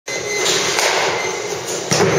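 Steady noise of a large indoor hall with a few sharp knocks, the sharpest just before the end, typical of a batting cage where a ball and bat are in play.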